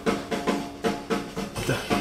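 Live swing band playing, the drum kit keeping a steady beat of sharp hits under sustained low instrument notes.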